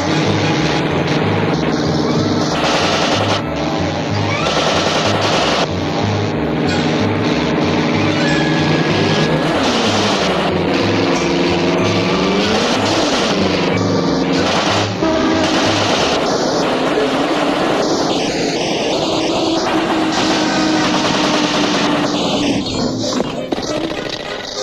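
Orchestral cartoon score with a steady pulsing bass beat, mixed with rapid machine-gun fire. Around the middle the music twice slides up and back down in pitch.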